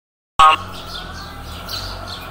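Brief loud high-pitched call about half a second in, then birds chirping faintly over quiet outdoor background.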